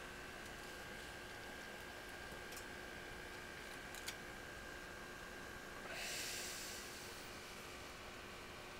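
Quiet room tone with a steady faint hiss and a thin high whine. A single light click about four seconds in as a hand handles a desk-lamp arm, and a short breath close to the microphone about six seconds in.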